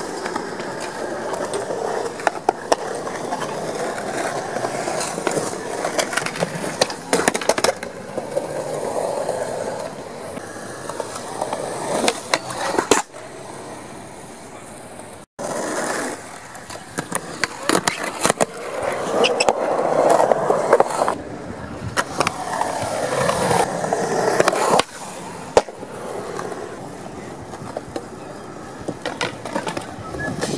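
Skateboard wheels rolling on concrete, with repeated sharp clacks of the board popping and landing. The sound cuts out for an instant about halfway through.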